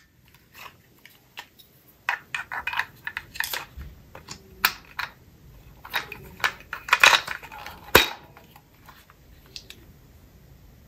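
A suction car phone mount and its plastic packaging being handled during unboxing: a run of crinkles and sharp plastic clicks, with one sharp click near the end.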